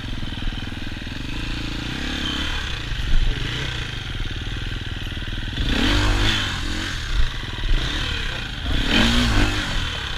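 Single-cylinder four-stroke engine of a Husqvarna FE250 enduro dirt bike running at low revs, with two short bursts of throttle about six and nine seconds in as the bike moves over rough ground.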